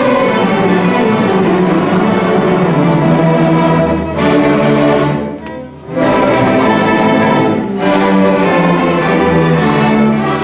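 A large student string orchestra of violins, violas, cellos and string basses playing sustained, full chords together. The sound drops out briefly about five and a half seconds in, then comes back in.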